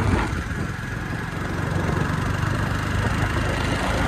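Motorcycle engine running steadily while riding, a low even rumble with wind and road noise over it.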